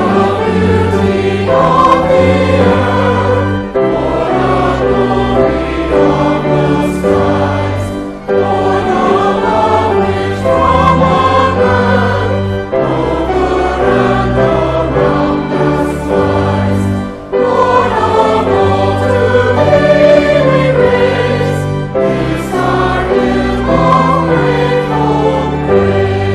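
Church choir singing an anthem with organ and violin accompaniment, phrase after phrase with short breaks between.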